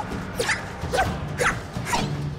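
Comedic soundtrack sound effect: four short squeaky cries, each falling in pitch, about two a second, over light background music.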